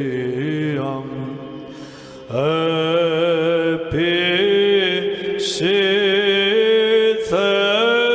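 Orthodox church chant: voices singing a slow, gliding melody over a held lower note, in several phrases with a brief drop in level about two seconds in.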